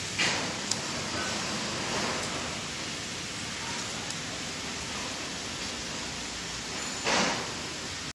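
Steady hiss of running workshop machinery, with two brief louder rushes of noise, one just after the start and one about seven seconds in.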